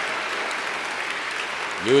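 Congregation applauding steadily; a man's voice starts speaking near the end.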